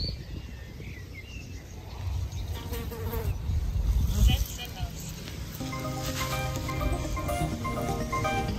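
Wind buffeting the microphone in uneven gusts, loudest about halfway through. About two thirds of the way in, background music with steady held notes starts and continues.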